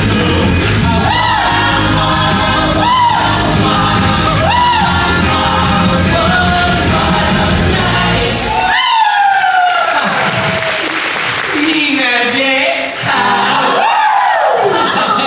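A rock-and-roll song sung live over a loud backing track with bass and drums. A little over eight seconds in, the band cuts out and the singer holds a long note that slides downward while the audience cheers.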